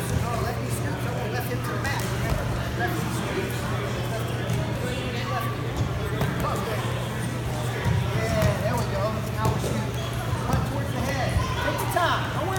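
Gym ambience at a wrestling practice: indistinct voices over a steady low hum, with scattered thuds and scuffs of wrestlers hitting and moving on the foam mats.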